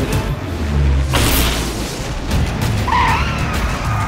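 Trailer sound design over music for a jet airliner in trouble: a deep boom, a loud rushing whoosh about a second in, and a high screeching glide near the end as the plane comes down.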